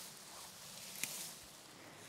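Faint rustling of tall pasture grass as stalks are grabbed and pulled up by hand, with a brief sharper rustle about a second in.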